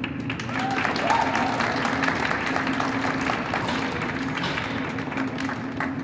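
Audience applauding, swelling over the first couple of seconds and thinning toward the end, over a steady low hum.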